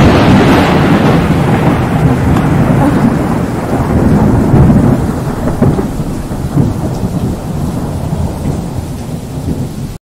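Thunder rumbling over steady rain, loudest just after a sharp crack at the start and slowly fading over several seconds, then stopping abruptly.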